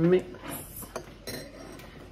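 A teaspoon stirring tea in a ceramic mug, with a few light clinks of metal against the cup.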